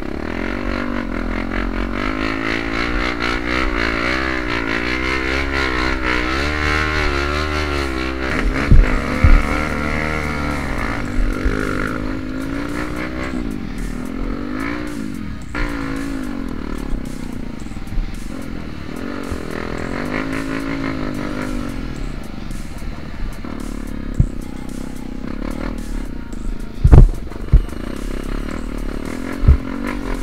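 Yamaha WR155R single-cylinder trail bike engine revving up and down over and over as it climbs a muddy, slippery hill. A few sharp thumps from jolts over the ruts, two about nine seconds in and more near the end.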